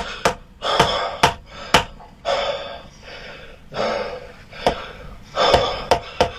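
A wooden mallet knocking sharply on a wooden peg held against a man's upper spine, several irregular strikes with four quick ones in the first two seconds, aimed at a protruding vertebra. Between the strikes the patient takes loud, deep breaths and gasps.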